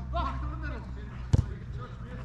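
A football kicked once, a single sharp thud of boot on ball a little over halfway through, over a steady low hum and distant shouting of players.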